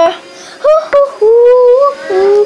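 A child singing: a short note a little over half a second in, then one long held note that wavers slightly in pitch and stops just before the end.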